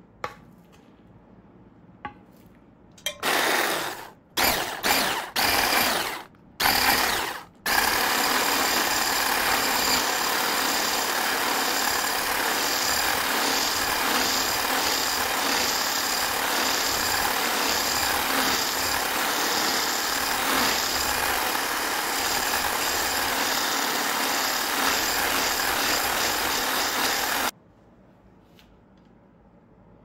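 Electric hand blender mixing cake batter in a glass bowl. After two light clicks, it starts in a few short on-off bursts, then runs steadily for about twenty seconds and cuts off sharply.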